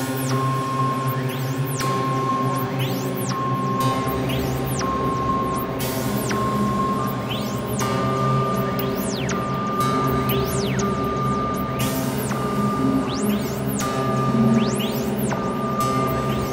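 Electronic soundscape from a VCV Rack software modular synthesizer patch. A low drone holds under a short high tone that repeats about once a second and steps up in pitch about halfway through. Frequent falling whistle-like sweeps drop from high up.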